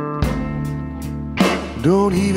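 Slow blues-rock band music: held electric guitar chords over bass, with two drum hits about a second apart. A singing voice comes in near the end.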